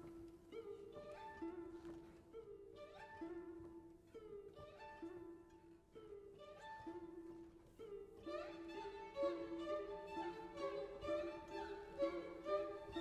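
Quiet passage for guzheng and string ensemble: soft repeated notes, each with a short pitch bend at its start, over held string tones. The texture thickens and gets louder in the last few seconds.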